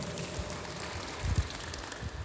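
A congregation clapping, many hands together in a steady spread of noise, with one low thump about one and a half seconds in.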